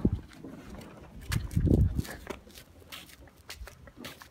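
Footsteps walking over dry grass and stone ground, as scattered sharp knocks, with a louder low rumbling thud about a second and a half in.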